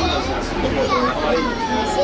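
Children's voices chattering and calling out, with high gliding pitches, over a low steady hum.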